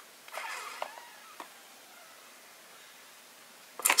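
Faint rustling with a couple of light clicks as hands handle an empty cardboard trading-card box, in the first second or so, then only quiet hiss.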